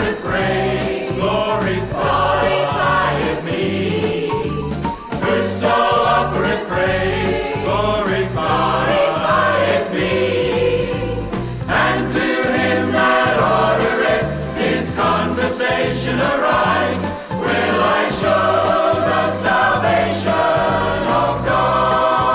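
Recorded 1970s scripture-song music: a choir singing with instrumental accompaniment and a moving bass line.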